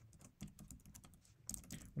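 Typing on a computer keyboard: a few quiet keystrokes, then a quick run of several near the end.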